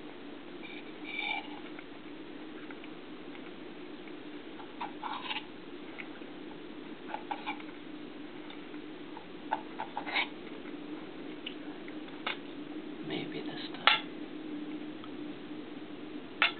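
Kitchen clatter: scattered sharp clicks and clinks of utensils and dishes, the loudest about fourteen seconds in, over a steady low hum.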